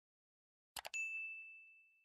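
Two or three quick clicks, then a single bright ding that rings on one clear tone and fades away over about a second and a half.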